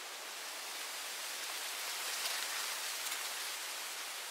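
A steady soft hiss with no distinct sounds standing out of it.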